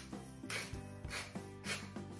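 Hand salt grinder twisted over a bowl, giving short rasping grinds of salt crystals repeated every half second or so, over soft background music.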